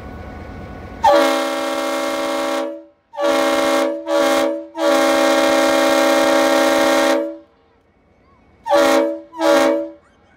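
Victorian Railways S-class diesel-electric locomotive S307 sounding its multi-tone horn after a second of low rumble: a long blast, two short blasts, another long blast, then two short blasts near the end.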